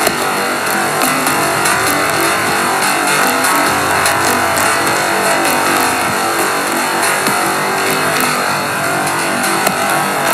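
Instrumental electronic synthpop played on iPad apps (Aparillo synthesizer with DrumComputer): a dense, steady synth texture at full level with no vocals.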